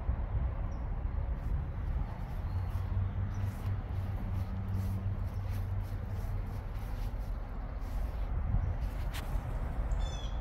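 Outdoor background rumble, with a steady low hum from about three to six seconds in and a single sharp click near the end.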